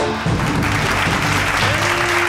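Audience applauding over the tail of background music, the clapping swelling in shortly after the start.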